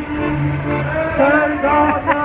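Women's choir singing together in unison, with an accordion holding low sustained notes beneath the voices.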